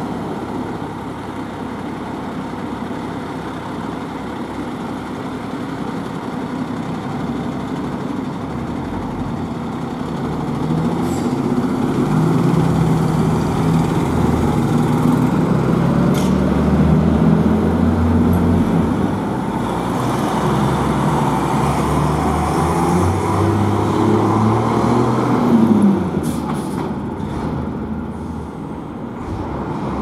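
Diesel engine of a Mercedes-Benz civil-defence water tanker fire truck idling, then pulling away, growing louder and staying loud through the middle before easing off near the end. A brief sharp noise, likely an air-brake hiss, comes shortly before the end.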